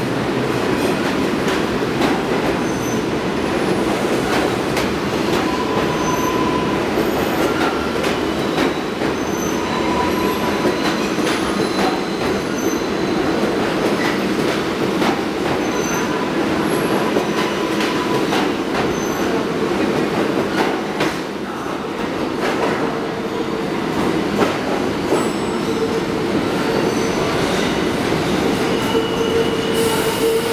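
New York City subway train moving along a station platform: a steady rumble with clatter from the wheels and repeated short, high wheel squeals. A steady hum comes in over the last several seconds.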